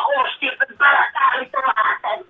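Speech: a man talking into a trolleybus's passenger-address microphone.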